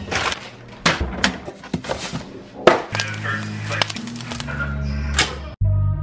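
Hand rummaging through frozen packages and plastic zip bags in a freezer drawer: crinkling and irregular knocks. Music comes in under it, and music alone takes over near the end.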